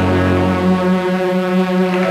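Synthesizers holding a final sustained chord at the end of a synth-pop song, the low bass note cutting out about a second in while the upper chord rings on.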